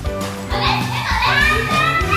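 Children's high voices calling out over background music, starting about half a second in.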